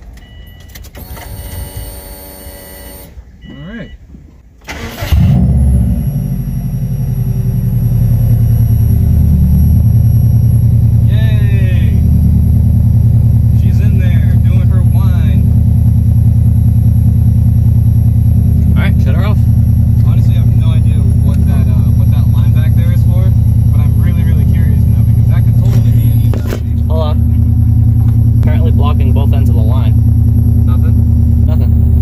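Subaru WRX turbocharged flat-four engine starting about five seconds in, just after a brief whine, and settling into a steady idle. The engine is running on a newly fitted AEM high-flow fuel pump that has just been primed.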